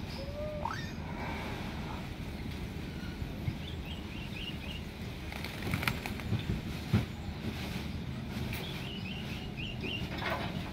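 Caged hill myna flapping its wings and shifting about in a wire cage, with a cluster of knocks and rattles about six to seven seconds in, the loudest near seven seconds. A short rising whistle comes just after the start, and faint quick high chirps sound in the background over a steady low hum.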